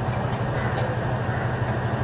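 A steady low machine hum, even throughout, with no speech over it.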